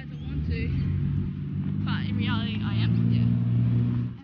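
A steady low engine-like hum that grows a little louder, with voices talking over it.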